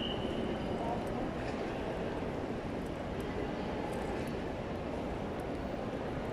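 Steady background hubbub of a busy indoor shopping mall, with distant voices blending into a continuous low noise. A faint high tone at the start fades away within a second or two.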